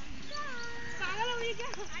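A high-pitched voice: one drawn-out, level call followed by shorter wavering sounds.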